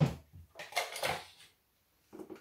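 Drinking glasses handled in and out of their cardboard box: a knock right at the start, then a short run of glass knocks and clinks mixed with rustling packaging about half a second to a second and a half in.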